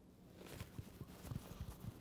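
Faint handling noises of a small box being opened: a few soft knocks and rustles as its lid is lifted.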